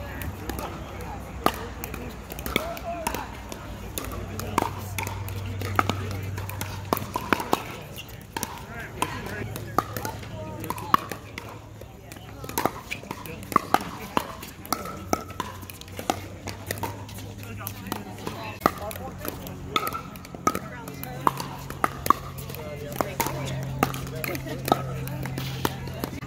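Pickleball paddles striking hard plastic balls on several courts: sharp pops at irregular intervals, some close together in rallies, over indistinct chatter of players and spectators.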